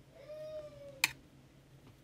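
A brief high-pitched call with clear overtones, just under a second long, rising slightly and then falling, followed by a single sharp click.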